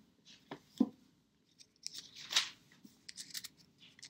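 Pages of a hardcover Bible being turned by hand: a couple of light ticks, then a rustling swish of paper about two seconds in, followed by a few more small ticks.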